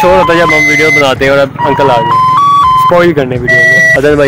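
A man talking over background music. About halfway through, the voice drops back and a simple melody of held notes steps up and back down.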